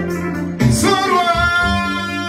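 Kora, the West African gourd harp, plucked in a steady accompaniment. A high singing voice comes in about half a second in, rises, then holds a long note.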